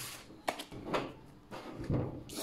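Oracle cards being handled by hand: a few soft taps and rustles, about a second in and again near the end, as a card is taken from the deck.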